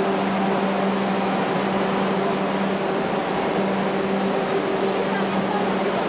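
Steady low mechanical hum over a constant wash of background noise.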